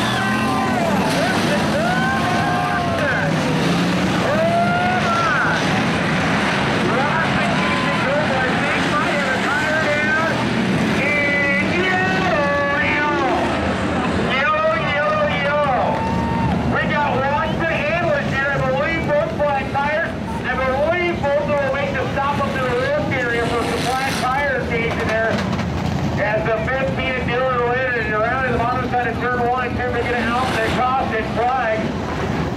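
A field of hobby stock race cars running laps on a dirt oval, several engines overlapping, their pitches rising and falling as the drivers get on and off the throttle through the turns.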